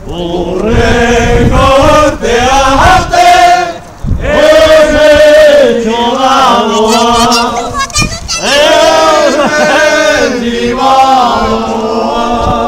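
A crowd singing together in unison, a chant-like song in lines of about four seconds with brief pauses between them.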